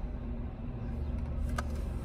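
Steady low hum of a car's cabin, with a single small click about one and a half seconds in.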